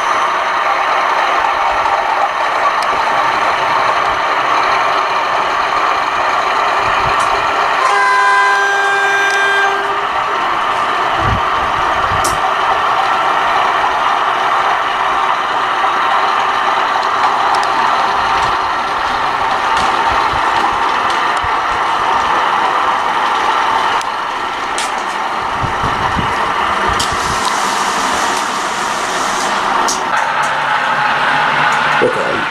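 Diesel locomotive running steadily as a freight train passes, with its horn sounding for about two seconds roughly eight seconds in.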